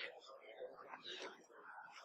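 Faint murmured speech, too quiet for words to be made out.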